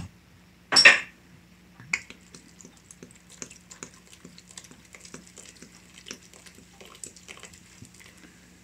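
Pale ale poured from a glass bottle into a steel pot of soup ingredients and water, fizzing and trickling in a run of fine crackles from about two seconds in. A brief loud hiss comes about a second in.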